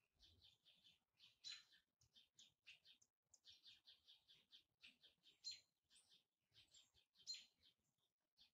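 Near silence with faint birds twittering in the background: quick, repeated high chirps, a few slightly louder ones about one and a half, five and a half and seven seconds in.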